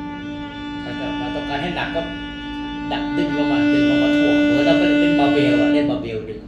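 Violin bowing one long sustained low note that swells clearly louder about three seconds in as more arm weight goes into the bow, making the string vibrate more.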